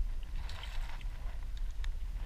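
Steady low rumble of wind buffeting a camera microphone out on open water, with a few faint short clicks about half a second in and near the end.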